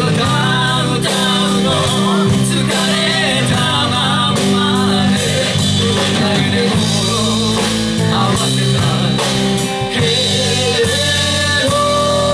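A live rock band playing: singing over electric guitars and a drum kit keeping a steady beat.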